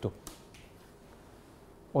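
A sheet of papers set down on a table with a single brief tap, followed by quiet room tone.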